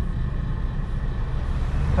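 Steady low rumble of a small car's engine heard from inside the cabin while it waits in traffic.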